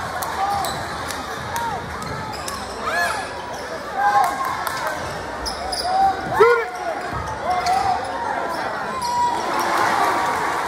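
Basketball game sounds on a hardwood gym court: sneakers squeaking in short chirps as players cut and stop, and the ball bouncing, over crowd chatter. The loudest squeak comes about six and a half seconds in.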